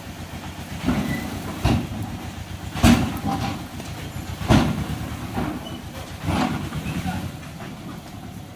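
Mahindra Jivo mini tractor's engine running while its tipping trailer dumps a load of dragon fruit stem cuttings. The cuttings slide off and hit the ground in a series of heavy thuds every second or so, the loudest about three seconds in.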